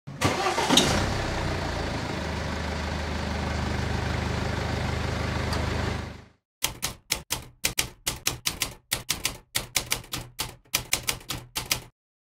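A car engine starts and then idles steadily for about six seconds before cutting off. Then comes a quick run of typewriter keystrokes, about four or five a second.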